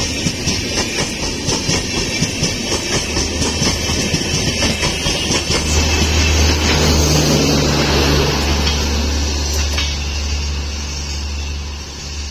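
LHB passenger coaches running past close by, their wheels clicking rhythmically over rail joints. Then the steady low drone of the end-on-generation power car's diesel generator set passes, the sound easing slightly as the train pulls away.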